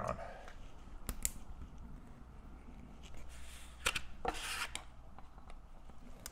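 A small hand blade cutting along the edge of vinyl window film on glass, guided by a plastic squeegee. There are a couple of light clicks about a second in, then short scratchy cutting strokes around the middle.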